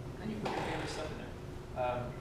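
Two brief stretches of indistinct speech, over a steady low hum.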